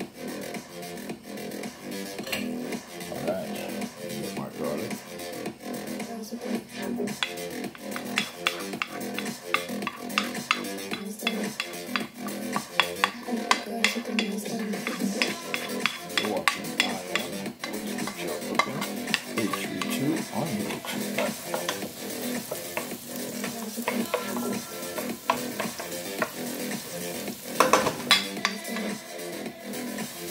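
Minced garlic sizzling in hot olive oil in a nonstick pot while a wooden spoon stirs and scrapes it, a dense run of small clicks and crackles, over background music.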